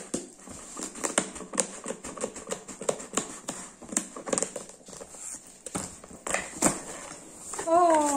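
Hands handling and opening a corrugated cardboard shipping box: a run of irregular taps, scrapes and crackles. A voice sounds briefly near the end.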